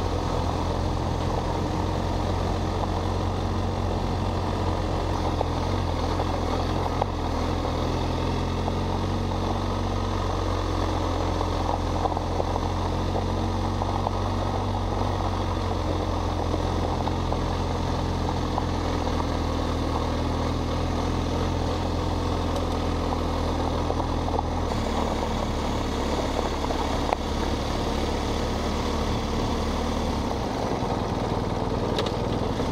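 BMW R1250 GS Adventure's boxer-twin engine running at an even pitch while riding, under a steady rush of tyre and wind noise. The engine note drops about 25 seconds in.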